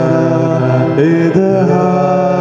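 A slow church hymn sung with long held notes, moving to new notes about a second in.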